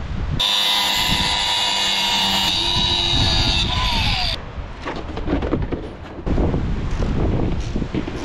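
Angle grinder cutting through a steel bolt with a loud, high whine that dips briefly in pitch and stops abruptly about four seconds in. Quieter low knocking and rumbling follow.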